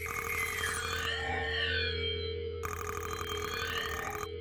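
Electronic sound design under a TV title graphic: a steady low synth drone with gliding electronic tones, and a whooshing swept effect at the start and another from about two and a half seconds in.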